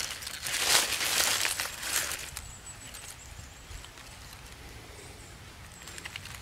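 Rustling and crumbling of soil, roots and dry leaves as a hand handles freshly dug wild leek bulbs and brushes the dirt off them, busiest in the first two seconds, then only a low outdoor background.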